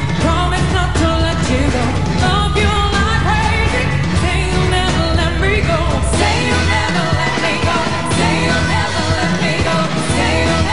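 Women singing a pop song live over a backing track with a steady beat; the deep bass thins out about seven seconds in.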